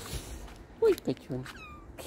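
A domestic cat meowing a few short times, about a second in, with a higher falling call near the end.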